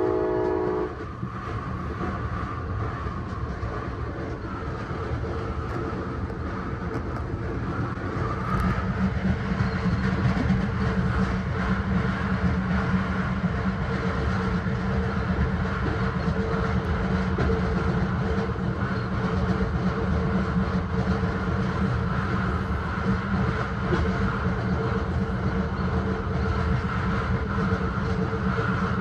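A San Joaquin passenger train heard from on board: a short horn note ends about a second in, then a steady rolling rumble with a low hum, growing louder from about eight seconds in.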